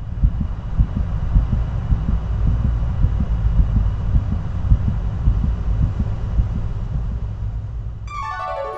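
Heartbeat sound effect: low thumps a few times a second over a steady deep rumble and hiss.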